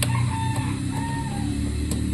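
A bird calling twice in the background, each call held on one pitch for about half a second, over a steady low hum. There is a sharp click at the start and another near the end.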